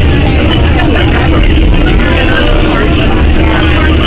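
Inside a Siemens S70 light rail car as it pulls away from a station: the car's running gear and drive give a steady low rumble, with voices in the background.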